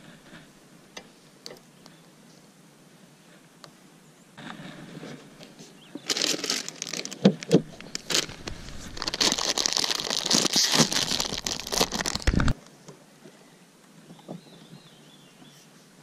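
A Fritos chip bag crinkling and rustling as it is handled and passed from hand to hand. It starts about four seconds in, is loudest in the middle, and stops abruptly after about twelve seconds.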